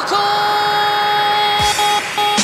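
Electronic dance-track intro: a held synthesizer tone with a horn-like timbre, cut briefly at the start and then resumed, with a low falling sweep near the end.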